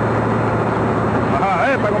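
Diesel engine of a Belarusian farm tractor running steadily at close range, with a constant low hum under it, as the tractor is brought to a stop beside a combine harvester.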